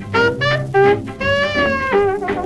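Late-1920s jazz orchestra record. A lead horn plays a few short sliding notes, then holds one long note that bends slightly, over the band's rhythm section and bass.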